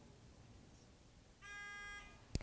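Near silence, then about one and a half seconds in a quiz-show buzz-in signal sounds a steady electronic tone for about half a second as a team buzzes in to answer.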